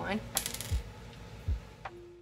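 A few small clicks and a short scrape from a slim metal makeup pencil being handled close to the microphone.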